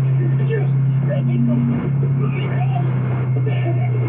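A steady low drone with faint, indistinct voices over it.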